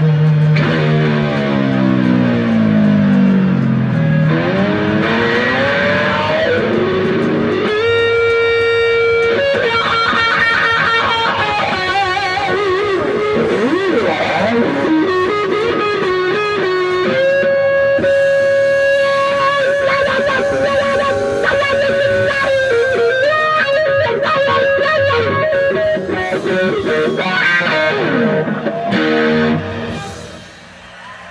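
Distorted electric guitar, a 1964 Fender Stratocaster through fuzz and other effect pedals into Fender tube amps, playing an improvised lead. It opens with a long downward slide over the first few seconds, then moves into quick runs and long sustained notes with wide vibrato. The playing drops away at the very end.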